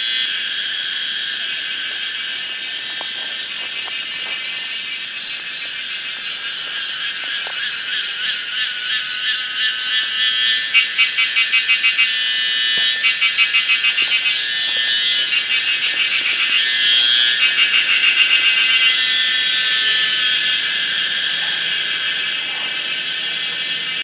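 Cicadas calling in chorus: a dense, high buzz that swells and, through the middle, breaks into fast regular pulses for several seconds before settling back to a steady drone.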